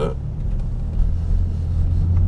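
Steady low rumble of a car driving, its engine and road noise heard from inside the cabin.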